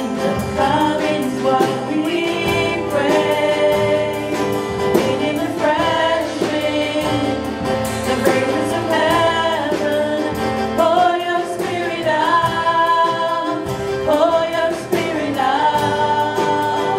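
Live worship song: lead singers on microphones with acoustic guitar and band accompaniment, sung continuously with no break.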